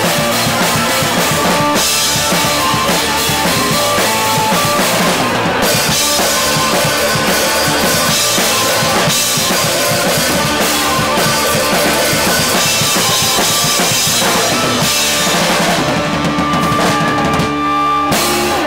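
A live punk rock band playing loud in a small basement: drum kit with bass drum, snare and crashing cymbals, over distorted electric guitars and bass. Near the end the cymbals drop away and a few held notes ring on.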